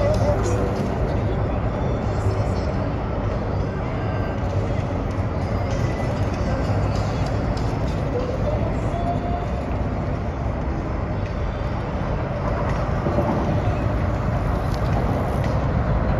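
Steady low rumble of city traffic, even in level throughout.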